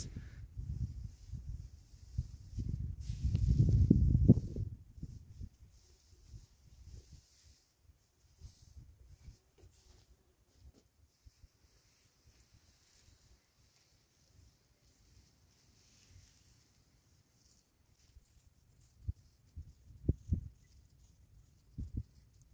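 A plastic tarp bundle of dry plant debris being gathered up and handled, with low rustling and rumbling that is loudest about three to four seconds in. It then goes almost quiet, with a few soft thumps near the end.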